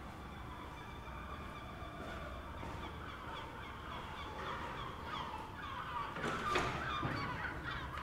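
Birds chattering in many short, quick calls, growing busier and louder after about five seconds.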